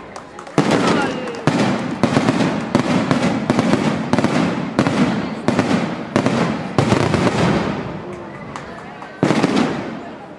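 Aerial fireworks shells bursting in a rapid barrage, a sharp report about every half-second to second starting about half a second in, about ten in all. The bursts thin out and fade after about seven seconds, and one more loud burst comes near the end.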